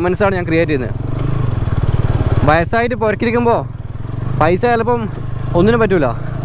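TVS Apache motorcycle engine running steadily at low revs, a low pulsing hum as the bike is ridden slowly at walking pace, with a man talking over it at intervals.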